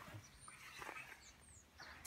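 Near silence: faint outdoor background with a low hum and a few faint, short high chirps.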